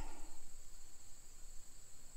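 Steady high-pitched insect chorus from the grass, one unbroken drone.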